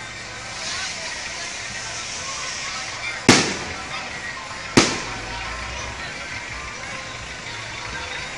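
Two loud firecracker bangs about a second and a half apart, over a steady background of crowd voices and music.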